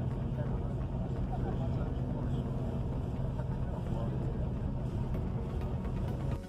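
Steady low engine and road rumble heard from inside a moving vehicle travelling along a highway.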